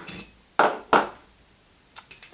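Two sharp knocks of the steel toolpost parts and bolt being handled and set down on a wooden workbench, about a third of a second apart, after a faint tick.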